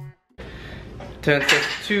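Background music cuts off, and after a brief gap comes a steady low room hum with metallic clinking, as a loaded barbell and its plates are handled in a squat rack. A man starts talking near the end.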